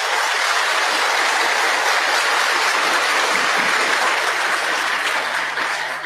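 Steady applause from many members of parliament in the chamber, tailing off near the end.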